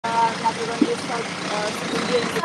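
Steady rush of road traffic, with faint speech in the background.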